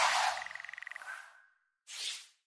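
Sound effects for an animated title transition: a whoosh, then a rapidly pulsing tone that thins into a faint fading tone. A second short whoosh comes near the end.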